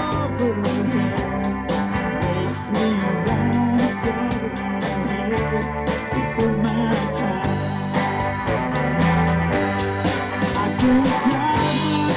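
Live band playing a country-rock song: a drum kit keeps a steady beat under electric bass and guitar.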